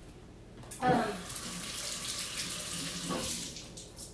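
Kitchen faucet running in a steady stream, turned on about a second in and off just before the end.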